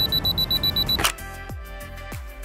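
A camera's self-timer beeping rapidly in evenly spaced high beeps as it counts down, ending in the shutter click about a second in. Background music with a steady beat follows.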